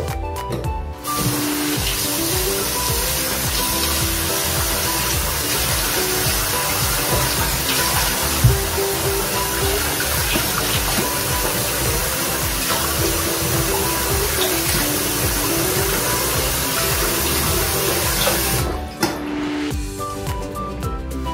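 Tap water running into a sink while a face is rinsed of cleanser foam, starting about a second in and stopping near the end. Background music plays throughout.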